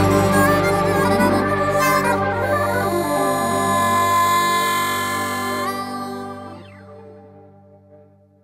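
Instrumental close of a country song: harmonica holding a long note over the band's sustained chord. About six seconds in the harmonica stops, and the last chord dies away almost to silence.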